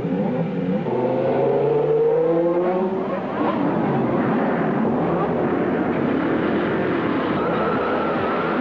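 Formula One car engines revving, their pitch climbing over the first few seconds, then several cars together with pitches rising and falling as they pass.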